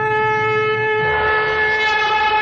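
One long held note from a wind instrument at a steady, unchanging pitch.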